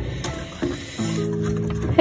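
Background music with held, sustained notes. It is quieter in the first second and comes back fuller about a second in.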